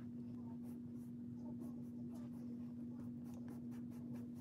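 Makeup sponge dabbing liquid foundation onto the face: faint soft pats, a few a second, over a steady low hum.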